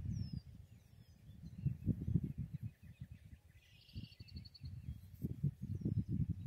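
Wind rumbling unevenly on the microphone, with small birds calling: a few short downward chirps near the start and a quick trill about four seconds in.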